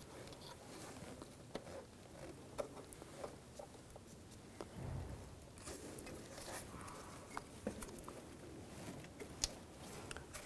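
Faint handling sounds from gloved hands working a new camshaft position sensor into its bore on the engine: scattered small clicks and taps over light rustling, with a soft low thump about five seconds in.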